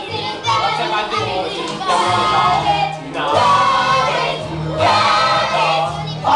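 A group of children singing together over instrumental accompaniment, in sung phrases of a couple of seconds with brief breaks between them.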